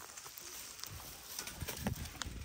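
Faint crackling and rustling of dry leaves and twigs in leaf litter, a scatter of small snaps that grows busier in the second half.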